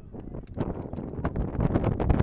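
Wind blowing across an outdoor microphone, a fluctuating low rumble.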